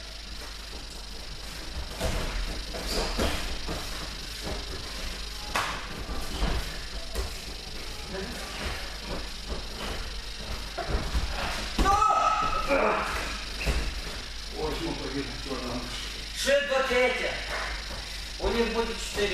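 Voices in a large hall, loudest about twelve seconds in and near the end, over scattered thuds and shuffling of feet on gym mats as two people grapple.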